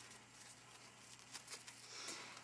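Near silence, with faint rustling of a fabric ribbon being handled as it is gathered up along its stitching thread.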